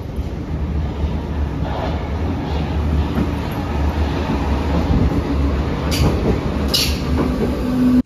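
Berlin U-Bahn U7 train pulling into an underground station, a deep rumble building as it approaches along the platform. Two sharp clicks sound near the end, followed by a steady low hum as the train slows.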